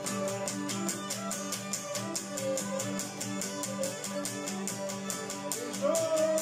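Cretan lyra playing a bowed melody over a laouto strumming a steady rhythm, about five strokes a second. A man's singing voice comes in right at the end.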